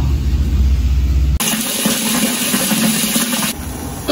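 A low rumble, then from about a second and a half in a steady rushing hiss of a large pot of water at a rolling boil on a stove, easing slightly near the end.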